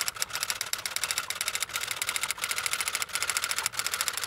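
Typewriter sound effect: a rapid, steady run of key clacks as on-screen text is typed out.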